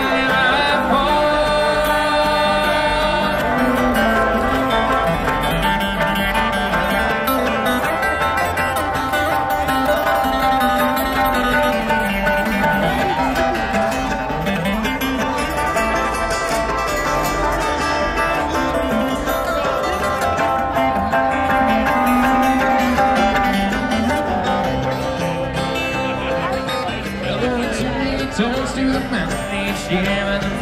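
Live bluegrass band playing an instrumental passage on plucked string instruments, heard over a large outdoor PA.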